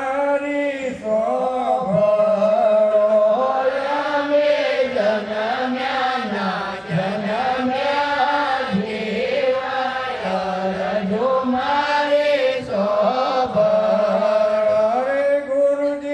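Voices chanting a devotional chant, sung continuously with a melody that rises and falls.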